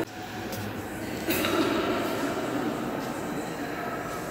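Reverberant murmur of visitors talking and moving about in a large stone church, with no clear single voice; it swells a little about a second in.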